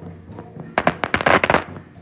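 A quick string of firecrackers popping rapidly for under a second, the loudest sound here, over music with a steady drum beat and held tones.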